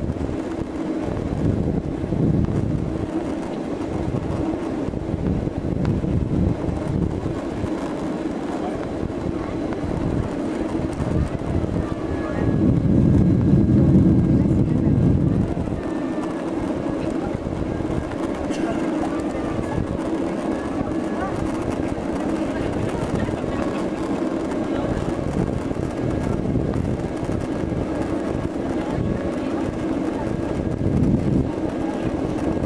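Cabin noise inside a Boeing 767-300ER in its climb: a steady low rumble of engines and airflow heard from a window seat, swelling louder for a few seconds about halfway through.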